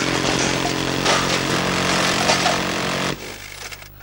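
Minigun firing one long, unbroken burst at about 3,000 rounds a minute, 50 shots a second, so the shots run together into a steady rattling buzz. It cuts off suddenly about three seconds in.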